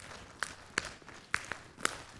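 Hands slapping on the thighs as body percussion: a slow, steady beat of sharp slaps, about two or three a second.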